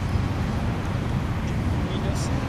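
Steady low rumble of road traffic from a highway.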